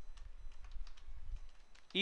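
Computer keyboard being typed on: a scatter of light, irregular key clicks.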